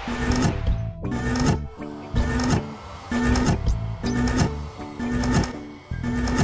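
Cartoon doorbell-testing machine pressing a doorbell button over and over, the bell chiming about once a second in a steady, even rhythm.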